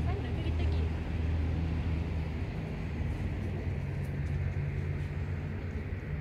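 Steady low outdoor rumble with a hum, and faint voices in the first second.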